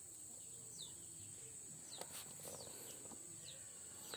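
Faint outdoor ambience: a bird giving several short, falling chirps, over a steady high hiss.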